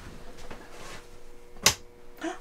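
A single sharp click of an RV ceiling light's switch as the light is turned on, about a second and a half in, over a faint steady hum.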